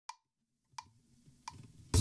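Three short, evenly spaced clicks, under a second apart, counting in a bossa nova karaoke backing track, which comes in loudly right at the end.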